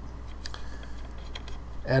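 A few faint, scattered clicks over a steady low electrical hum.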